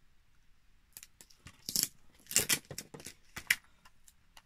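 Thin clear plastic sheets and sellotape crinkling and crackling as they are handled, in a handful of short crisp bursts, the strongest about two and a half seconds in.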